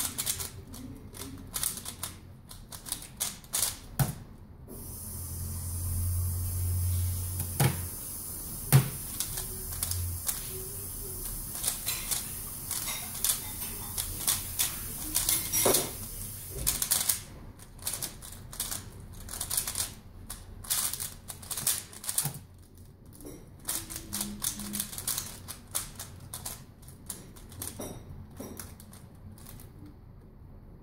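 A plastic 3x3 speedcube (Valk Power) being turned fast, its layers clicking and clacking in quick runs. There are two runs, one at the start and a long one in the second half, with a quieter stretch of several seconds between them.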